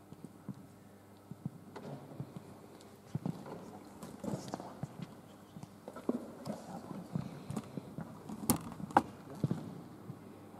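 Scattered light footsteps and knocks on a wooden sports-hall floor, irregular and echoing, with two sharper clicks near the end.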